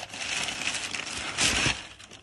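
White tissue paper rustling and crinkling as a sneaker is pulled out of its shoebox, with a louder crinkle about one and a half seconds in.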